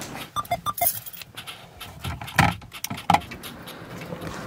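Handling noise from a camera being picked up and carried: scattered knocks and thumps, with a few light clinks about half a second in.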